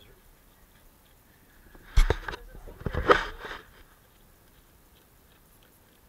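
Close handling noise: a sudden knock and rustle about two seconds in, then a longer burst of rustling about a second later.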